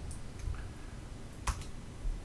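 Quiet room tone broken by a single sharp click about one and a half seconds in, with a fainter tick near the start.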